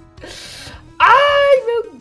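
A young woman's high-pitched squeal of delight, about a second in and lasting about half a second, falling in pitch at the end, after a breathy sound just before it.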